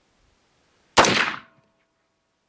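A single rifle shot from an FN15 AR-15 rifle chambered in .300 Blackout, firing a supersonic round: one sharp report about a second in that dies away over about half a second.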